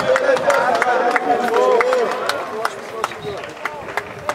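Several people shouting and calling out at once on a rugby pitch, voices rising and falling over each other, with scattered sharp clicks throughout. The shouting eases somewhat after about three seconds.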